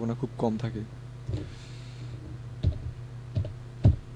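Computer keyboard keystrokes: four separate clicks spread over a few seconds, the loudest near the end.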